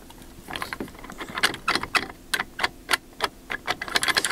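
Wooden door knob and its brass spindle being rocked back and forth in an old rim latch, giving a quick, irregular run of light metallic clicks and knocks from about half a second in. The rattle is the knob's excess slack, from the worn-out bushes that hold the handles.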